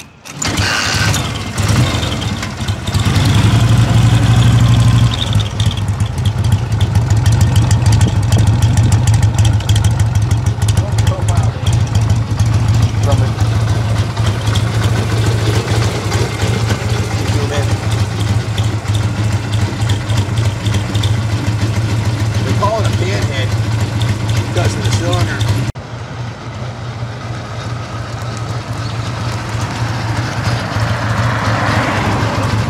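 1959 Harley-Davidson FLH Panhead's 74 cubic inch V-twin kick-started, catching at once with a loud, lumpy rumble. It revs up briefly over the first few seconds, then idles steadily. Near the end the sound drops abruptly and thins.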